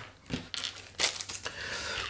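Thin clear plastic bag crinkling in the hand, with a few light clicks of small resin kit parts being moved about.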